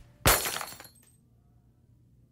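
A glass object in a wire cage smashing on a carpeted floor: one sudden loud crash about a quarter second in, with shards tinkling briefly after.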